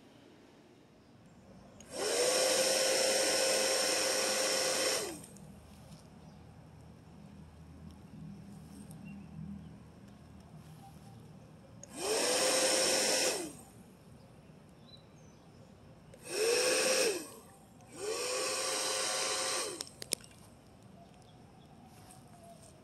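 Battery-powered bubble gun's fan motor whirring in four bursts as the trigger is pulled, each spinning up to a steady whine, holding, and winding down when the trigger is let go. The first burst is the longest, about three seconds, and the other three follow later, two of them in quick succession.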